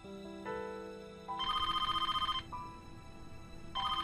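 A telephone ringing with a fast electronic trill: two rings of about a second each, the first about a second and a half in, over soft background music.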